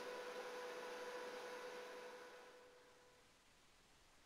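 Faint steady electrical hum with background hiss, fading out over about three seconds to near silence.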